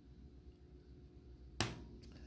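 A single sharp metallic knock about one and a half seconds in: a stainless steel mold ring being set down on a steel worktable. Otherwise faint room tone.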